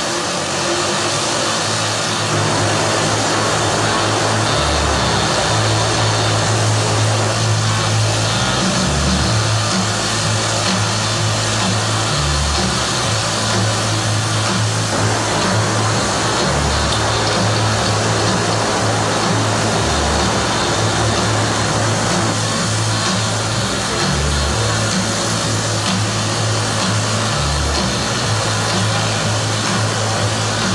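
Music with a deep bass line that changes note every second or two, over a steady whir from the many small electric rotors of a Volocopter multicopter hovering.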